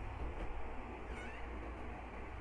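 Steady low hum and background noise, with a faint short high animal call about a second in.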